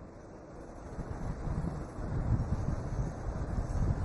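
Low, irregular rumbling noise of wind buffeting a microphone, growing louder about a second in.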